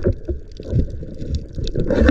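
Muffled underwater noise recorded in the water: a low rumble of water moving around the diver and camera, with many scattered small clicks and crackles throughout.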